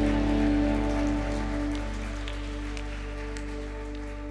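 A worship band's last chord held and fading out: sustained keyboard and bass tones ringing down, with a light patter of scattered sharp clicks over them.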